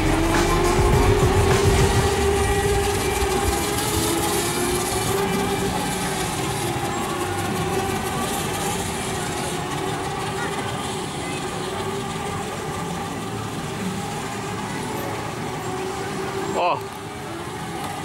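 A vehicle's motor whining steadily, rising in pitch in the first second and then holding one level note, with a low rumble that fades after about two seconds. A brief voice sounds near the end.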